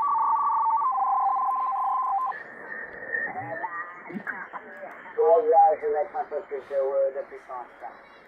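Shortwave receiver audio from an RTL-SDR dongle being tuned across the 40-metre amateur band in sideband mode. At first there are steady paired whistling tones that change pitch twice as the frequency is stepped. Then a sideband voice comes through over band noise, thin-sounding with no high end.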